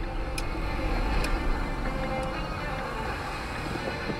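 Low, steady rumble of a car's engine and road noise heard from inside the car, with music playing over it and a few sharp clicks in the first half.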